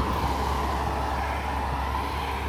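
A heavy machine's engine running loud with a steady, unbroken drone.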